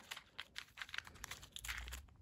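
Small clear plastic jewellery bags and cardboard jewellery cards being handled, a faint, quick run of light crinkles and clicks.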